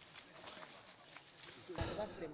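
Faint footsteps and rustling of undergrowth on a narrow dirt footpath, from a man walking while carrying a person on his back. Near the end the background abruptly gets louder.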